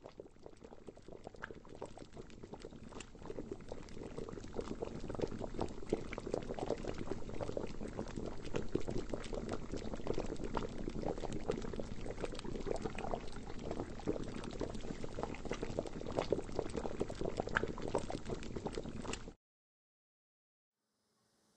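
Liquid boiling, a dense run of small bubbling pops. It fades in over the first few seconds, holds steady, and cuts off suddenly near the end.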